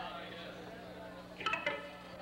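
Indistinct background talk over a steady low hum from the stage gear, with two short, bright metallic clinks close together about one and a half seconds in.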